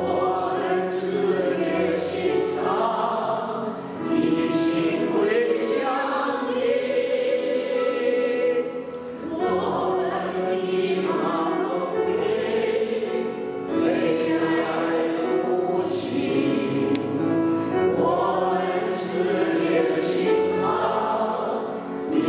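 A small group of men and women singing a Mandarin worship hymn together, in sustained phrases with short breaks between lines every few seconds.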